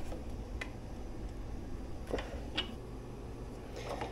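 A few faint, separate clicks as a bicycle pedal is threaded by hand onto the crank arm, the pedal spun towards the front of the bike.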